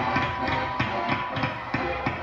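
High school marching band playing, with a run of evenly spaced drum hits under quieter held wind notes.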